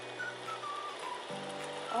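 Soft background music with long held notes.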